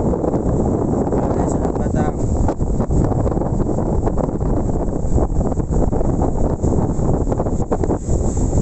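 Strong storm wind buffeting a phone microphone, a loud, steady, rumbling roar with constant gusty fluctuation.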